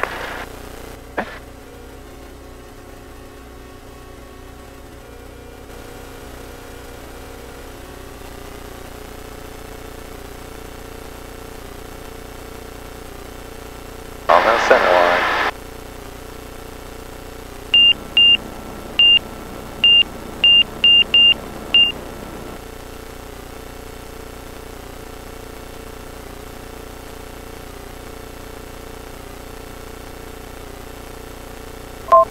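Van's RV light aircraft's engine and propeller running steadily through the takeoff, a low even drone. Past the middle comes a run of nine short high-pitched electronic beeps over about four seconds.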